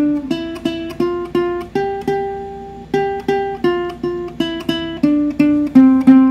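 Ukulele picking the C major scale one note at a time, do up to sol and back down, each note plucked twice at about three notes a second, with the top note held for about a second.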